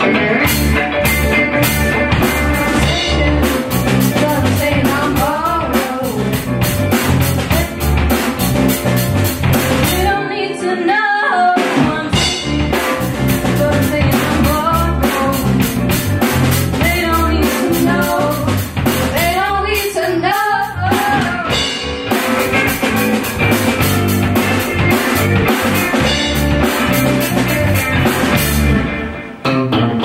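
Live rock band playing: electric guitars, bass and drum kit under two women singing. About ten seconds in, the bass and drums stop for about a second, leaving the voices, and the whole band breaks off briefly just before the end.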